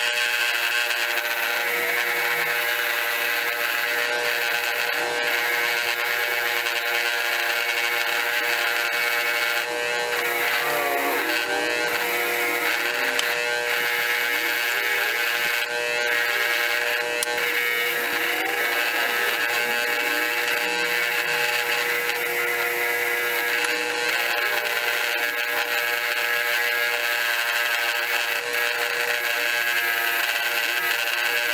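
Small bench grinder running steadily with a wire wheel, the steel head of a ball peen hammer held against it to clean it: a steady motor hum under a dense wiry hiss, the pitch wavering now and then as the head is pressed in and moved about.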